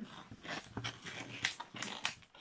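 Latex modelling balloon squeaking and rubbing against itself and the hands as it is twisted and handled: a series of short, irregular squeaks.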